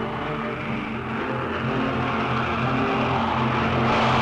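Formation of twin-engine propeller aircraft flying over, a steady low engine drone that grows louder toward the end.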